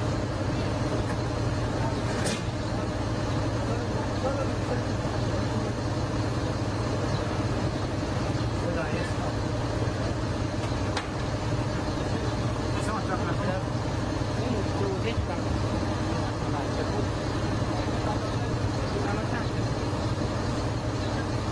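Fire engine's engine running with a steady low drone, with faint voices and a few light clicks in the background.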